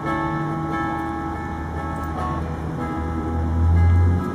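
Steel-string acoustic guitar playing an instrumental passage with sustained ringing notes and no vocals. A low rumble swells near the end and becomes the loudest sound.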